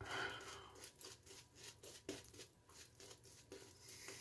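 Razor scraping stubble through shaving-soap lather on the cheek: a series of short, faint, irregular strokes.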